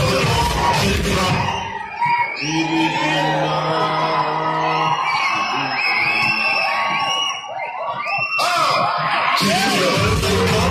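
Film soundtrack music playing loud in a cinema hall, with an audience of fans yelling and whooping over it. The cheering is a dense roar at the start and again near the end, thinning out in between, where single yells rise and fall.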